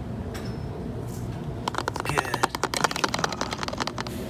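A rapid run of small clicks and taps starting about halfway through, from a teaspoon and a plastic funnel being handled while another spoonful of baking powder is scooped and dropped in.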